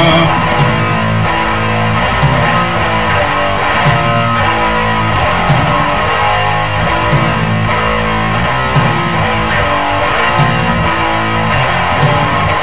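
Instrumental heavy metal passage led by electric guitar, with a steady beat accented about every second and a half.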